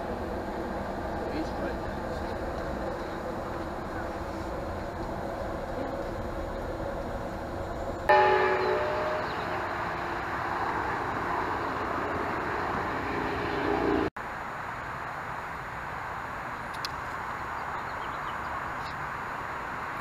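Steady rumble and hum inside an Amtrak passenger car. About eight seconds in a sudden, louder sound with several held tones begins, then a rushing noise that cuts off sharply, leaving quieter background sound.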